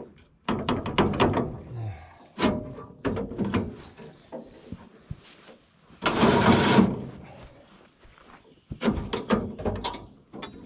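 Sickle knife of a Hesston PT-7 haybine being pulled out sideways through the guards of the cutter bar. Its metal sections clank and scrape against the guards in bursts of rattling clicks, with a sharp knock about two and a half seconds in and a longer scrape of about a second around six seconds in.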